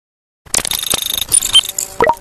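Video-editor outro sound effect for an animated end logo: a bright, jingling shimmer of chimes and quick clicks, starting about half a second in.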